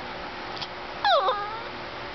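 A small Chihuahua–Italian Greyhound mix dog giving one short 'talking' yowl about a second in, falling in pitch.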